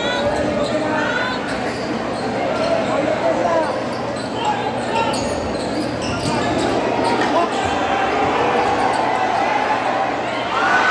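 A basketball being dribbled on a hardwood court in a large, echoing gym, under the steady chatter of a big crowd.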